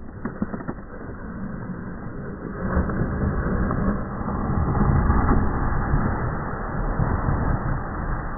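Rushing, splashing noise of a speed-flying pilot's feet and legs dragging across a lake surface and throwing up spray. It starts about three seconds in and is loudest around the middle, as he skims close past.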